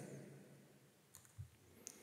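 Near silence broken by a few faint computer mouse clicks in the second half, the clearest near the end, as a drawing tool is picked from the software's toolbar.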